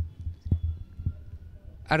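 Handling noise of a handheld microphone being passed from one speaker to another: a low rumble with three dull knocks, at the start, about half a second in and about a second in.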